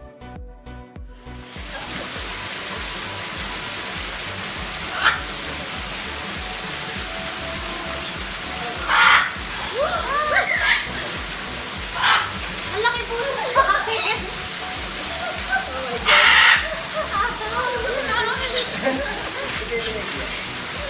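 Parrots (macaws and cockatoos) giving several short, loud, harsh screeches over a steady rush of water, with people chattering and laughing. Background music fades out in the first second or two.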